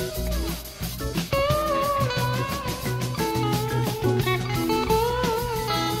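Live rock band playing an instrumental passage: an electric guitar lead holds long notes with bent, wavering pitch over bass and drums.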